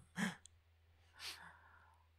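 Quiet breath sounds close to a microphone: a short voiced grunt just after the start, then a soft breathy exhale, like a sigh, about a second in, over a faint steady low hum.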